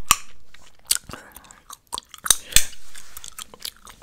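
Chewing gum close to a microphone: wet mouth smacks and a handful of sharp clicks at uneven intervals.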